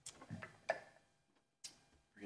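Faint handling noise close to a handheld microphone: three sharp clicks, the first two with soft rustling between them.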